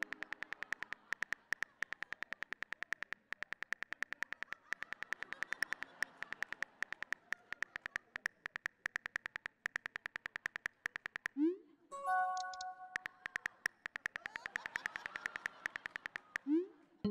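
Rapid smartphone keyboard clicks as a text message is typed out. A little before the two-thirds mark a rising swoosh and a short chime sound as the message is sent, then the typing clicks start again.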